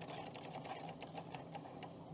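Plastic prize wheel spinning on its stand, clicking rapidly at first. The clicks slow as it winds down and stop near the end.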